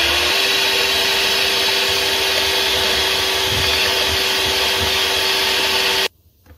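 Electric hand mixer running steadily, its beaters whisking batter in a bowl. The motor whine settles in pitch just after the start, then holds level until the mixer is switched off abruptly at the end.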